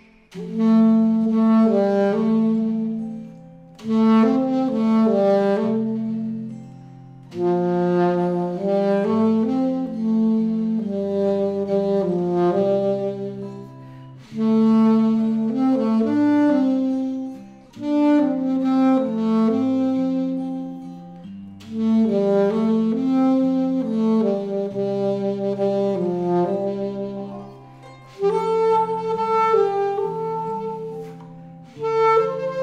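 Alto saxophone playing a slow melody in phrases of about three to four seconds, each starting strongly and fading, over a backing track that holds long low bass notes.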